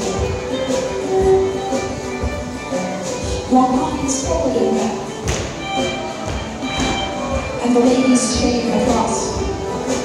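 Live contra dance band playing a steady dance tune, with the footsteps of many dancers tapping and thudding on the wooden floor.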